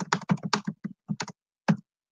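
Typing on a computer keyboard: a quick, irregular run of key clicks that stops shortly before the end.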